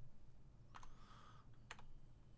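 A few faint keystrokes on a computer keyboard: two close together just under a second in and another near the end.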